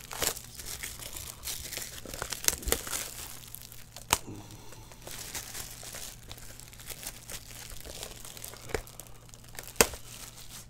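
Plastic shrink-wrap being torn and peeled off a cardboard card box, crinkling continuously with sharp crackles and snaps, the loudest just after the start, about four seconds in and near the end.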